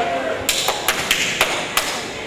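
A quick run of about six sharp taps and knocks over a second and a half, from a performer moving about a stage set and reaching a door.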